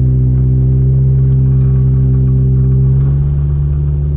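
Car engine and road drone heard from inside the cabin: a steady low hum of even pitch. About three seconds in it turns slightly quieter and thinner.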